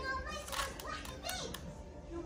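Faint children's voices and chatter in a room, with light plastic clicks of a Rubik's cube being twisted by hand.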